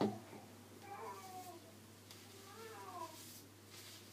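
Two faint, drawn-out meow-like cries: the first about a second in, falling in pitch; the second near three seconds, rising then falling.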